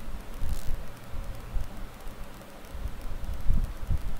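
Ground firework fountain (a 4-in-1 fountain) spraying sparks with a steady rushing noise, over uneven low rumbles of wind on the microphone.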